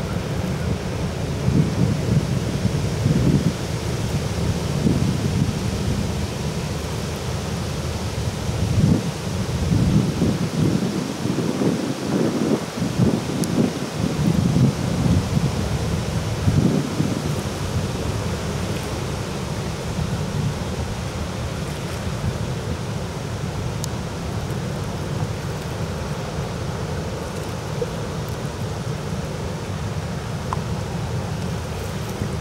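Wind buffeting the microphone in gusts through the first half, over a steady low rumble from the passing inland motor tanker and the rush of its bow wave.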